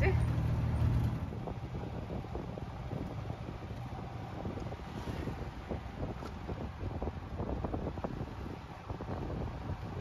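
Open-sided tuk-tuk riding along a road, its engine running with a steady low drone that eases off about a second in, leaving road and wind noise buffeting the microphone.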